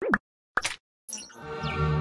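Sound effects of an animated logo intro: two quick cartoon pops, the first sweeping up and down in pitch, then from about a second in a held musical chord with a short falling whistle-like glide over it.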